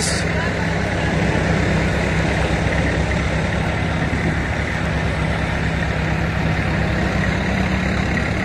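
Diesel tractor engine running steadily at an even pitch and constant loudness.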